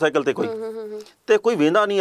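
Only speech: a man talking, holding one drawn-out vowel for about half a second near the middle.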